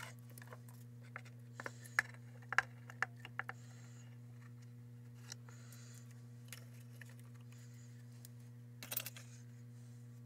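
Light clicks and taps of wooden jig strips and a steel C-clamp being handled and set down on a workbench: scattered knocks in the first few seconds and a short cluster near the end, over a steady low hum.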